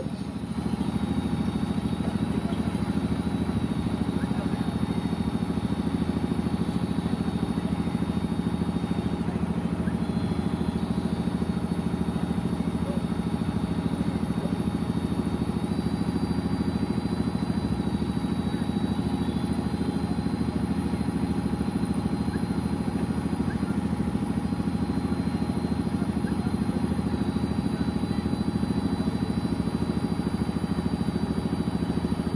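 A steady low mechanical hum, like an idling engine, runs unbroken with no speech while a crowd stands in a silent tribute.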